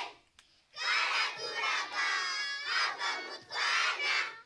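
A group of young children chanting loudly together in unison, in shouted phrases with brief breaks between them.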